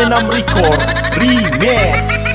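Indonesian DJ TikTok remix: a steady heavy bass under a warbling lead that swoops up and down in pitch, with a fast run of short repeated notes above it.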